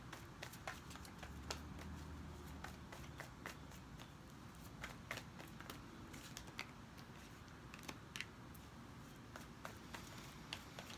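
A deck of tarot cards being shuffled by hand: a run of faint, quick, irregular card clicks.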